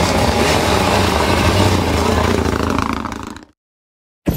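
Renault Clio rally car's engine running as the car pulls away, mixed with general crowd and street noise; the sound fades out about three seconds in and cuts off.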